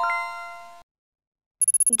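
A bright electronic chime of a few steady tones marks the correct quiz answer. It rings and fades away within about a second. Near the end, a quick run of short high beeps sounds just before a voice starts to say "gear".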